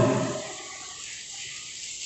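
A man's voice trails off, then faint steady room hiss with no distinct events.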